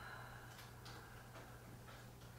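Near silence: room tone with a low steady hum and a few faint soft clicks.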